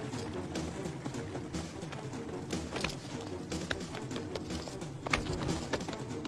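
Action film score running under the chase, with scattered sharp footfalls and hits from someone running across rocks.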